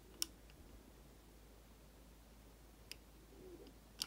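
Near silence with one short, sharp click about a quarter-second in and a fainter click near the end.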